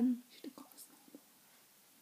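A girl's voice trailing off on a short held note, then a few faint whispered sounds.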